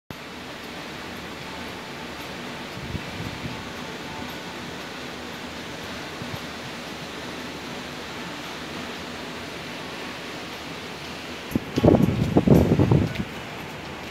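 Steady outdoor hiss of wind, broken near the end by a couple of seconds of low, irregular buffeting of wind on the phone's microphone.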